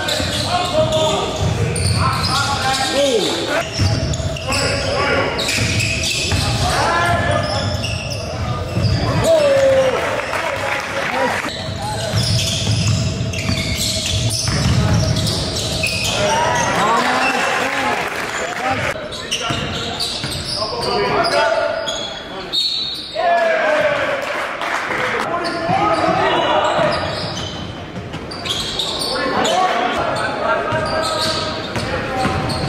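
Live basketball game sound in a gym: a ball being dribbled on a hardwood court, sneakers giving short squeaks, and players' and spectators' voices in the echoing hall.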